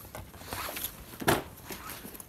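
Rustling and brushing of a puppy's fur rubbing against the phone as the puppy is held and handled up close, with one louder brush a little past the middle.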